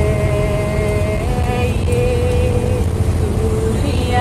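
Bus engine running steadily on the road, with tyre and road noise. Music with long held melodic notes plays over it.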